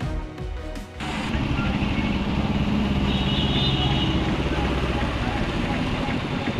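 A news theme music sting ends about a second in, then street sound takes over: motorcycle engines running as the bikes ride through a flooded street, with a steady rumble and wash of water.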